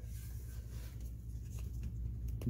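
Quiet garage room tone: a low, steady hum with a few faint clicks near the end.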